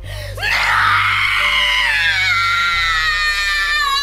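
A woman's long scream of pain, starting about half a second in and slowly falling in pitch, as the bloody wound on her arm is treated with a bottle pressed to it; music plays underneath.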